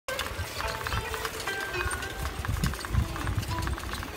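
Bicycle rolling over stone paving: a low, uneven rumble, with faint music in the background.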